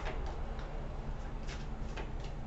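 A deck of tarot cards being shuffled by hand: a few irregular, sharp clicks of cards snapping against each other, over a steady low room hum.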